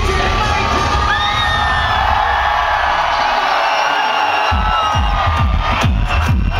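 Concert crowd cheering and screaming over loud electronic dance music. The bass drops out briefly past the middle, then the kick-drum beat comes back in about four and a half seconds in.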